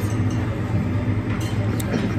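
Restaurant room tone: a steady low hum with faint background voices and a couple of light clinks of crockery in the second half.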